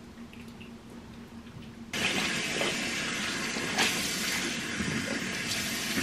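Bathroom sink tap turned on about two seconds in and running steadily, splashing as foaming cleanser is rinsed off a face.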